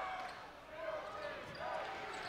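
Ambient sound of a live college basketball game in a gym: crowd murmur with faint distant voices during play.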